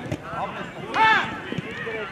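Shouting voices around a football pitch, with one loud shout about a second in whose pitch rises and falls, as a shot goes in on goal.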